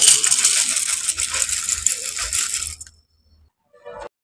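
Kellogg's corn flakes poured from their packet into a bowl: a dense, dry rattling of flakes landing on one another, which stops about three seconds in.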